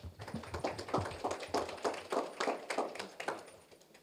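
A small audience applauding, a quick irregular patter of separate hand claps that thins out and fades away near the end.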